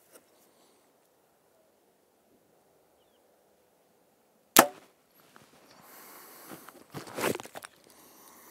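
A single shot from a Hoyt VTM 34 compound bow about four and a half seconds in: one sharp, loud snap of the string and limbs as the arrow is released. A few seconds of rustling and light knocks follow as the bow is handled.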